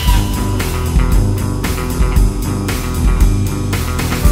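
Instrumental rock music: electric guitar and bass guitar over a steady beat, with no singing.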